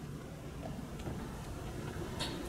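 Quiet room tone: a steady low hum, with a faint tick or two.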